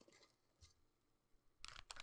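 Near silence, then about one and a half seconds in a quick run of faint, irregular clicks from a stainless steel ice cream scoop with a squeeze release as it scoops waffle dough and lets it go onto the waffle iron.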